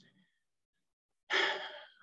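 A man sighs once, a breathy exhale that starts about two-thirds of the way in and fades, after a second of silence.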